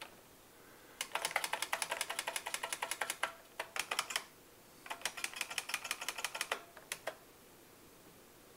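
Computer keyboard keys tapped in quick runs of clicks, several strokes a second, with short pauses between the runs. The keys step the text cursor along a line in the editor.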